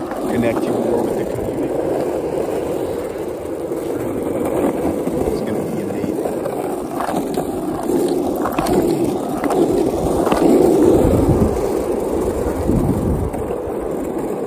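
Longboard wheels rolling on asphalt: a steady rumble, with a few sharp clicks in the middle.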